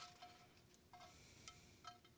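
Near silence: faint room tone with three faint, short chime-like pings about a second apart.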